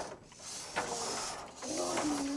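Small electric drive motors and gear trains of VEX competition robots whirring as the robots drive across the game field.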